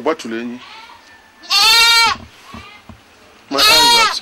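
Two loud, drawn-out calls about two seconds apart, each just under a second long, with brief bits of a man's speech around them.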